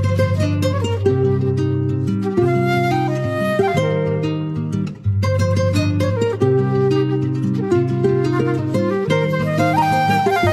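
Instrumental background music with held melodic notes and a short break about five seconds in.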